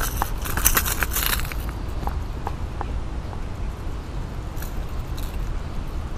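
A small smallmouth bass thrashing and splashing at the water's surface as it is lifted on the line, a dense flurry lasting about a second and a half. After that come a few scattered light ticks over a steady low rumble.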